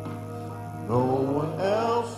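Church worship singing: a sustained accompaniment chord holds, then voices come in about a second in, singing a hymn line with vibrato and rising pitch.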